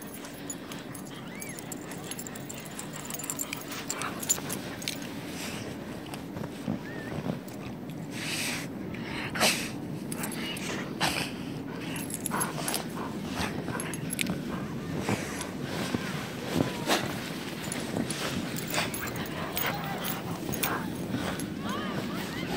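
Dogs playing in deep snow: short scuffling and snuffling bursts as a black-and-tan dog ploughs and digs its face through the snow, with a few brief high whimpers.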